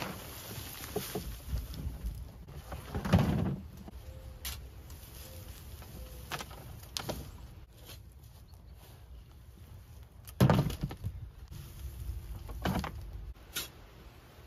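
A hollow plastic compost bin handled and lifted off its pile, then a garden fork digging into loose compost, with a run of knocks and thumps. The loudest thumps come about three seconds in and again about ten and a half seconds in.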